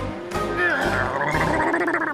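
A cartoon character's wavering, blubbering cry over cartoon music.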